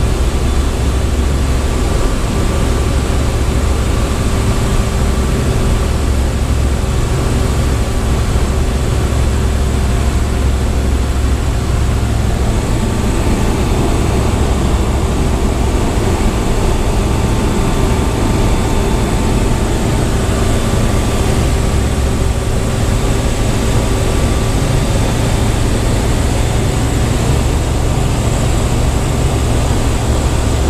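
Comco Ikarus C42 microlight's engine and propeller running steadily, heard inside the cockpit with the rush of wind around the airframe. The engine note shifts slightly about halfway through, during the circuit onto final approach.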